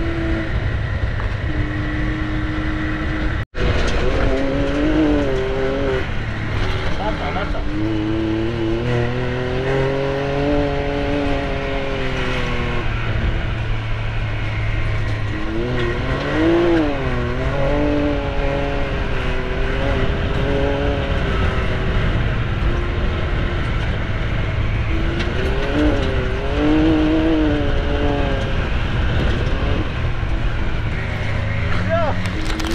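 Can-Am Maverick X3's turbocharged three-cylinder engine running under way, its pitch rising and falling over a few seconds at a time as the throttle is worked, over a steady low rumble. The sound cuts out for an instant about three and a half seconds in.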